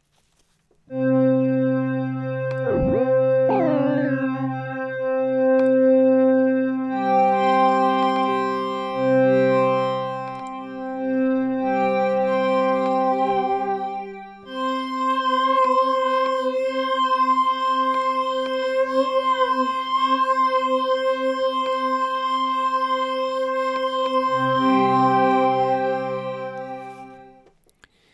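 Native Instruments FM8 software synthesizer playing a thick additive pad in sustained chords through its chorus effect. The chord changes every several seconds, a brief swooping sweep sounds about three seconds in, and the pad dies away just before the end.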